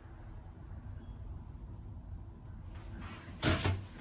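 Faint low rumble, then a short, sharp knock about three and a half seconds in, like a door or cupboard bumping.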